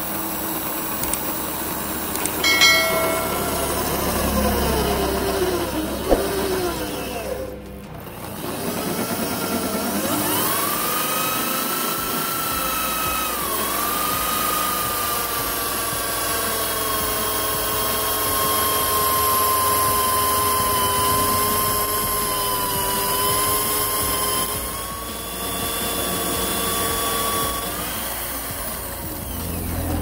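Benchtop drill press running, its bit boring through a cast resin ring blank set with small nuts. The motor's whine shifts and sags in pitch as the cut loads it, with a brief break about a third of the way in and another dip near the end.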